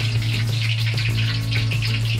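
Hot oil sizzling with a fine crackle in a deep fryer for tonkatsu, over a steady low hum.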